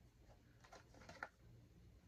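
Near silence with a few faint short clicks, about a second in, from a small cardboard window box being handled.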